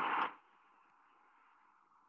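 The tail of a spoken word with a burst of noise, cut off about a third of a second in, then a faint steady hiss like static.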